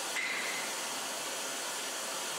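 Oxy-acetylene rosebud heating torch burning with a steady hiss.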